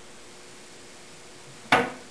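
Wooden cabinet door swinging shut on its Blum concealed hinges, closing with one sharp knock near the end.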